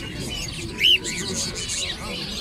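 Budgerigars chirping in a crowded pen, a few short arched chirps with one loud chirp a little under a second in.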